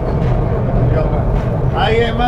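Steady rumble and running noise of a diesel-hauled Belgrano Norte commuter train moving slowly, heard from inside the passenger coach. A voice starts near the end.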